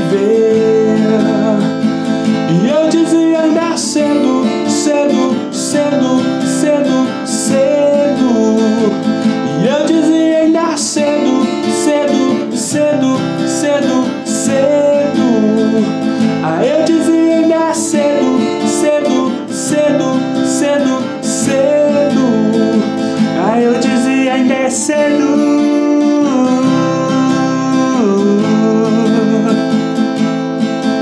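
Acoustic guitar strummed in a steady rhythm, cycling through the chords D minor, C major and A minor.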